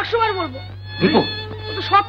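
A boy speaking in a high voice, with a steady low hum underneath.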